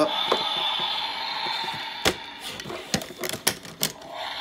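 Large plastic Transformers Dragonstorm toy transforming from dragon to robot mode. A hissing electronic transformation sound effect plays from its built-in speaker for the first couple of seconds, followed by several sharp plastic clicks and snaps as its parts swing and lock into place.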